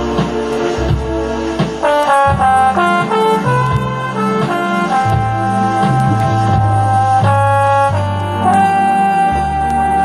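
Hammond Elegante XH-273 organ playing a slow melody in a brass-like voice over held pedal bass notes. A new phrase of long held notes begins about two seconds in.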